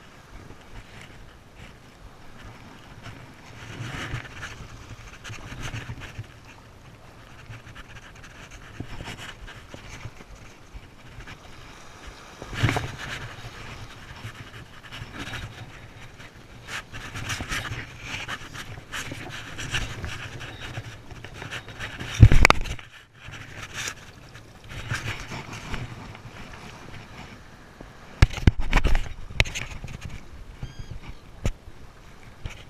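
Small waves washing over sand in shallow surf, rising and falling every few seconds, with wind gusting on the microphone. A sharp, loud thump about 22 seconds in.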